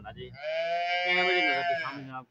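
A calf bawling: one long, high call of about a second and a half.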